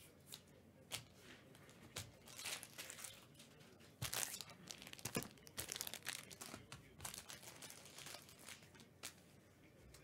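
Faint rustling and crinkling with scattered light clicks as trading cards and their packaging are handled in gloved hands.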